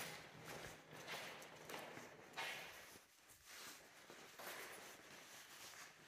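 Faint footsteps on a concrete floor at a walking pace.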